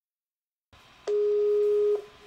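A call's ringing tone from a laptop: one steady electronic beep of just under a second, starting about a second in over faint room hiss, and cutting off sharply.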